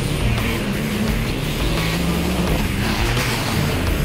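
Background music mixed with off-road rally car engines revving hard at racing speed.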